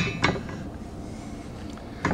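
Metal handling of a steel chair swivel plate and carriage bolt: two light metallic clicks at the very start, then faint handling noise.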